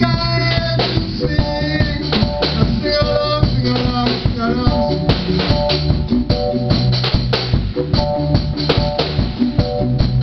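A band's music playing at a steady beat, with drum kit, a strong bass line and guitar.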